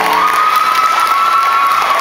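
Audience applauding and cheering as the song ends, with one long, high-pitched cheer held over the clapping.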